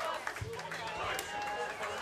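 Audience voices chattering between songs over a low steady hum from the amplifiers.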